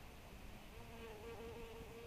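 A flying insect buzzing close to the microphone: a steady, slightly wavering buzz that starts under a second in and carries on to about the end.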